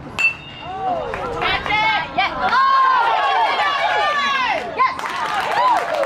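A metal youth baseball bat strikes the ball once with a sharp ping, then many spectators shout and cheer loudly as the ball is in play.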